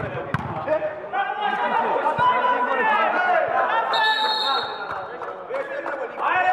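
A referee's whistle blown once, a short steady blast of under a second about four seconds in, over players' shouting. A football is kicked with a thud at the very start.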